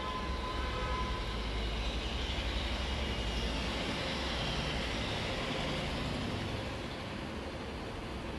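Low rumbling background noise with a steady hiss, easing off about seven seconds in.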